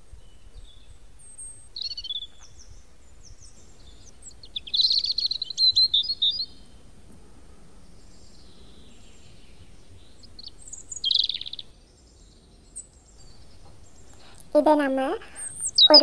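Small birds chirping and twittering in the background: a short chirp about two seconds in, a longer twittering run around five to six seconds, and another brief burst near eleven seconds.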